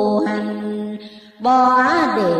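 A voice chanting Vietnamese Buddhist verse in the slow melodic ngâm style: a long held note that slides down and fades out, then a new phrase begins about a second and a half in.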